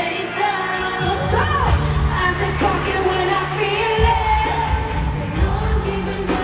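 A K-pop song performed live in an arena: singing over a loud backing track with a heavy bass, sounding boomy as heard from the stands.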